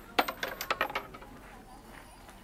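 Coins tossed into a shrine offering box, landing and clinking in a short cluster of sharp metallic clicks lasting under a second.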